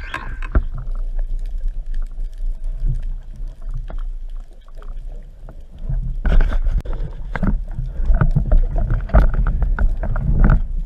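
Underwater rumbling and sloshing of water moving against a speargun-mounted camera while a spearfisher swims up to a speared amberjack, with scattered clicks and knocks. The rumbling is quieter in the first half and grows loud and choppy about six seconds in.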